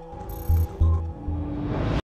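Channel logo sting: a short produced jingle with a brief high tone near the start and three deep bass hits in quick succession, over sustained tones.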